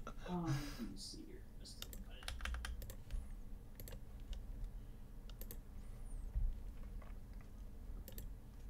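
Sparse, quiet clicks and taps of a computer keyboard, after a brief trailing laugh-like voice in the first second, with a couple of soft low thumps.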